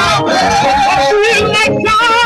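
Live gospel band with vocalists singing into microphones over drums and band; the sung notes slide and waver.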